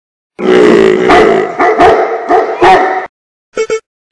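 A large dog, a bull mastiff, barking in a loud run of several barks for about three seconds. Near the end come two very short clipped sounds.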